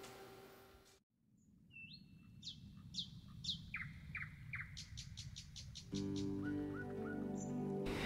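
Bird chirps: a string of quick, falling whistles repeated every half second or so, then a fast trill, after the previous music fades out and a moment of silence. Soft music with held notes comes in about six seconds in.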